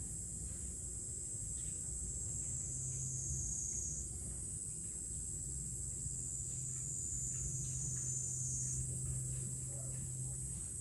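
A high, steady chorus of summer cicadas, its pitch slowly sinking and then jumping back up twice, over a low steady hum.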